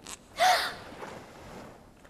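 A short, sharp gasp from a cartoon character about half a second in, breathy with a brief squeaky pitch.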